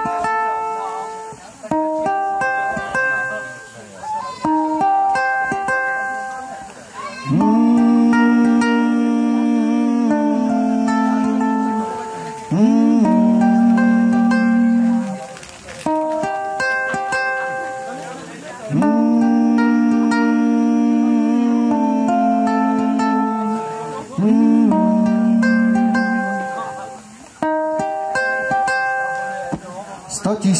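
Live acoustic instrumental introduction: a ukulele plucks a melody. From about seven seconds in it is joined by long held, wordless melody notes, each sliding up into pitch, in two repeating phrases.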